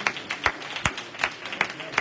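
Hand claps in a steady rhythm, about two and a half a second, as the congregation claps along with the testimony.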